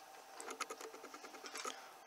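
Faint, light clicking of a plastic LEGO City camper van model (set 60057) being handled in the hand, a scatter of small clicks from the bricks and parts.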